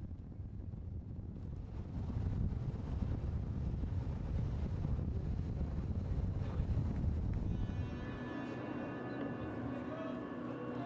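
Low rumbling wind noise on the microphone. About eight seconds in it gives way to a quieter hum carrying several steady held tones.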